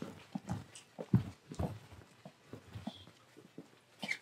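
Footsteps on a hard floor: irregular soft thuds, a few a second, loudest a little after a second in.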